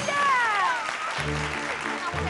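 Clapping with a game-show music sting: a cluster of tones sweeps downward over the first second, then low sustained music notes come in just over a second in.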